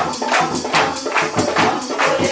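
A congregation clapping hands in a steady fast rhythm, about four to five claps a second, along with live Hindu devotional music (a bhajan at a Mata ki Chowki).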